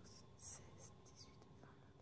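Near silence with a few faint, short scratchy sounds, the strongest about half a second in: stitches and yarn being handled on metal knitting needles.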